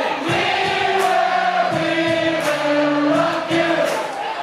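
Live band music with many voices singing together in long held notes, and drum strokes beating through it.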